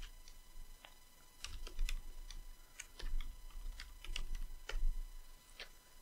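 Computer keyboard typing: faint keystrokes in a few short, irregular bursts, as a login name and password are entered.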